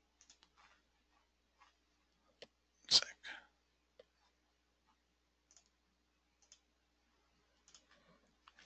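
Sparse computer mouse clicks. One sharp click comes about two and a half seconds in, followed by a louder brief double noise just before three seconds, then a few fainter clicks.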